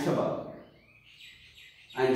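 Faint run of short, chirpy squeaks from a felt-tip marker being written across a whiteboard, about a second in, as letters are drawn.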